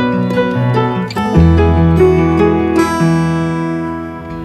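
Background music: a tropical house track with plucked guitar-like notes over a bass line that changes note about a second and a half in.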